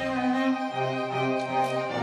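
A string orchestra of violins, cellos and double bass playing held, bowed notes, the bass line moving to a new note about two-thirds of a second in.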